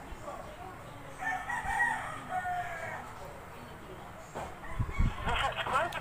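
A rooster crowing once, starting about a second in and lasting about two seconds.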